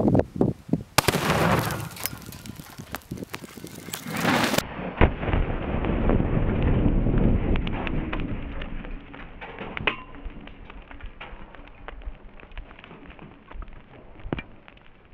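Tannerite binary explosive detonating under a computer. A sudden blast comes about a second in, followed by a deep, drawn-out rumble that slowly dies away, dotted with scattered cracks.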